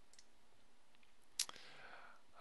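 A single sharp computer mouse click about a second and a half in, over faint room tone.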